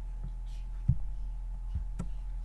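A computer mouse clicking, heard as three soft, dull thumps (the loudest about a second in), over a steady low electrical hum.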